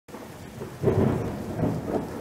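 Rain with rolling thunder: a steady hiss of rain and a deep rumble that swells up just under a second in.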